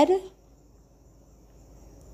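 Faint, steady high-pitched chirring of insects in the background, heard after the last word of speech dies away near the start.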